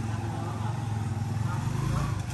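A vehicle engine idling, a steady low drone with a fine, even pulse.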